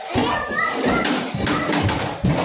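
Children playing and chattering in an indoor play area, with a child's high voice rising and falling about half a second in and scattered light knocks.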